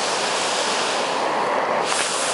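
River water pouring over a low weir, a steady rushing.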